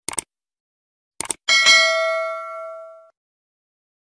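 Subscribe-button sound effect: a quick double click, two more clicks just over a second in, then a bell ding that rings out for about a second and a half. The ding is the loudest part.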